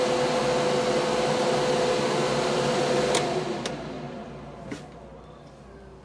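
A small electric blower motor, of the hair-dryer kind, running with a steady hiss and hum, then switched off with a click about three seconds in and winding down over the next couple of seconds.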